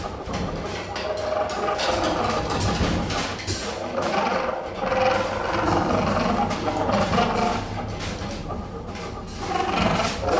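Live jazz quartet playing: a tenor saxophone line wanders over drums, double bass and electric guitar, with sharp drum and cymbal strokes throughout.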